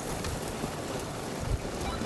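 Wind rumbling on the microphone over an electric off-road vehicle's tyres spinning and churning loose dirt, with a sharp click at the start and a low thump partway through. The spinning tyres are losing traction in the soft ground.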